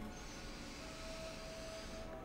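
A slow deep inhale: a faint, steady hiss of breath. A faint held tone joins about a second in.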